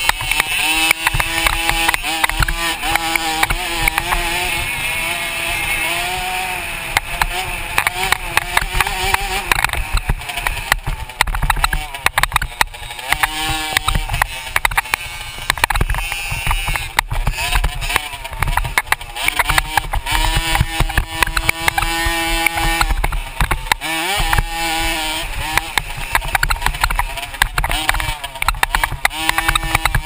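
Dirt bike engine heard from a camera mounted on the bike, revving up and falling off again and again through a motocross lap, with frequent sharp knocks from the rough track and a steady low rumble.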